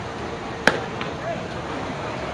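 A pitched softball smacking into the catcher's mitt: one sharp pop about two-thirds of a second in, over a background of voices.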